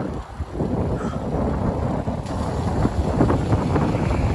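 Wind buffeting the microphone of a camera on a moving road bike, a steady low rumble with a brief lull just after the start.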